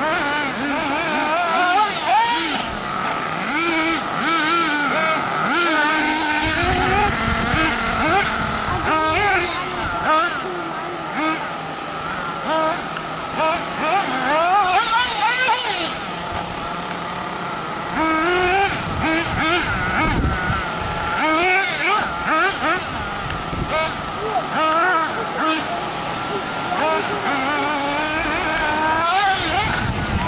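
Nitro RC buggy's small two-stroke glow engine revving up and down over and over as it is driven hard, its pitch rising and falling quickly.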